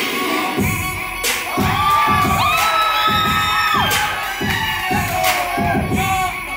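Dance-battle music from the DJ with a steady beat whose bass comes in about half a second in, while the crowd cheers and calls out over it.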